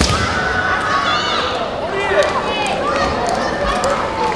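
Kendo bout in a gymnasium: a sharp clack of bamboo shinai at the start, then players' high drawn-out kiai shouts, with a few lighter clicks, echoing in the hall.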